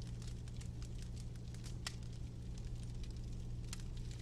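Faint, irregular crackling of a fireplace fire over a steady low hum.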